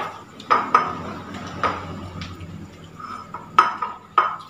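Plates clinking and scraping as people eat from them by hand: about six sharp, irregular clinks, each with a short ring.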